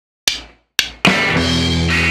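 Garage rock band starting a song: two sharp drum hits about half a second apart, each dying away, then the full band comes in about a second in with a held chord over bass and drums.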